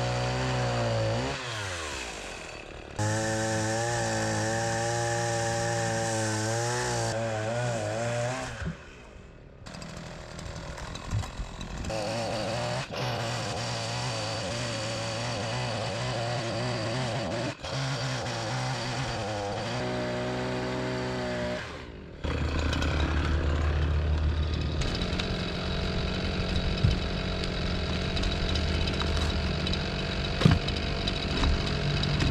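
A gasoline two-stroke ECHO chainsaw cutting through pine logs. It runs at full throttle in several long stretches, and its pitch drops and climbs again between cuts. The chain is dulling and cutting slower.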